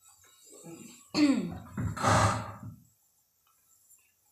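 A person clearing their throat and coughing: two short bursts, about one and two seconds in.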